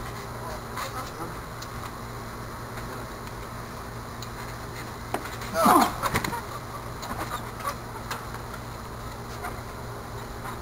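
A person's short cry, falling in pitch, a little past halfway. Around it come a few faint thumps of bodies on the trampoline mat over a steady low hum.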